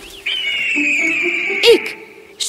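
Cartoon eagle call: one long, high cry that falls slightly in pitch, with a loud burst near the end, over soft background music.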